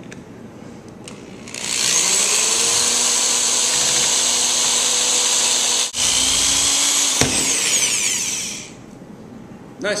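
Electric drill drilling out a stripped star-head screw in a plastic fan housing: it speeds up about a second and a half in, runs steadily, stops for a moment near six seconds, runs again and winds down near eight and a half seconds.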